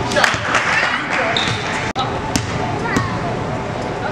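Voices and shouts from a gym crowd in a large hall as a basketball drops through the hoop. After that comes a basketball bouncing on the court floor: a few sharp, separate bounces.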